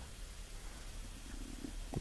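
Faint room tone in a pause of speech: a low steady hum under a light hiss, with a faint brief murmur just over a second in.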